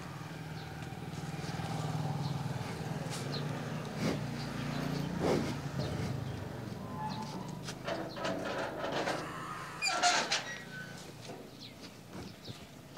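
Motorcycle engine running at idle, a steady low hum that fades after the first half. Scattered knocks and scrapes follow, the loudest about ten seconds in, as the metal gate is pushed open by hand.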